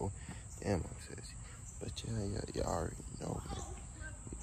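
A steady high-pitched drone of insects, with a man's voice speaking a few words over it about a second in and again in the second half.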